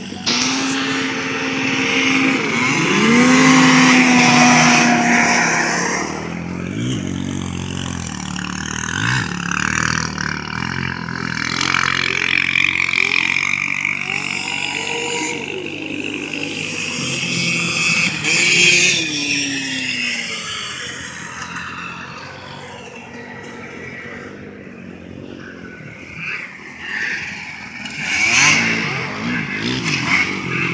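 Several snowmobile engines racing on ice, their engine notes rising and falling as sleds accelerate and pass by. It is loudest a few seconds in, with further peaks about two-thirds of the way through and near the end.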